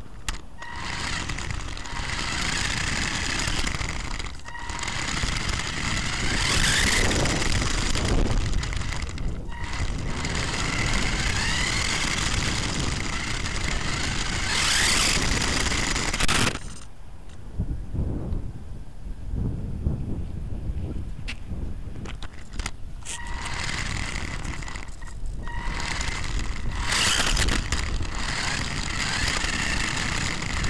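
Small electric drive motor of a Mini Rock Climber RC truck whining as it drives over tarmac, over a rough rumble from the ground. The whine drops out briefly a few times and stops for several seconds in the middle.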